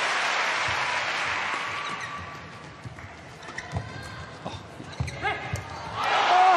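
Badminton rally in an indoor arena: crowd noise dies away over the first two seconds, then rackets strike the shuttlecock sharply several times and shoes squeak on the court.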